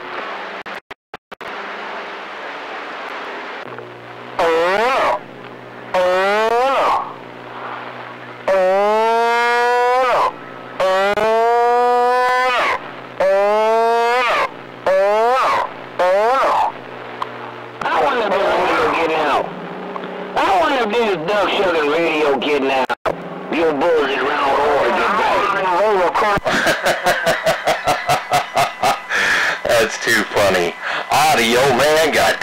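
CB radio channel traffic heard through the receiver: short keyed-up transmissions of swooping tones that rise and fall in pitch, then a few seconds of unintelligible, garbled voices in hiss, ending in a fast fluttering stutter of about four pulses a second.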